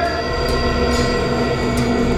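Tense drama background score: sustained synth-drone tones held at fixed pitches, with a few faint ticks.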